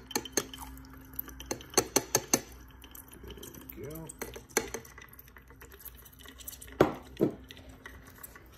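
Sharp clinks and taps of glassware as lead oxide powder is knocked from a watch glass into a beaker, several in quick succession about two seconds in and a few more near the end. A faint steady hum from the magnetic stirring hotplate runs underneath.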